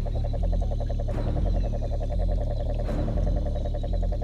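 Cane toad calling: a long, even trill of rapid pulses, over low sustained notes of background music.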